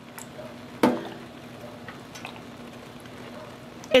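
Plastic squeeze bottle squirting dye onto wet yarn in a pan of hot water: a sudden short squirt about a second in, then soft liquid sounds over a faint steady low hum.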